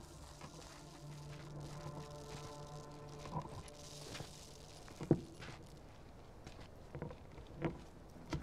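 Footsteps and scattered knocks on concrete rubble, a few sharp taps about three, five and seven and a half seconds in, over a faint low steady drone.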